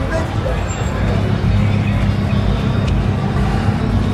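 Busy street ambience: a steady low rumble of traffic with the voices of passers-by and café diners over it, and music in the background.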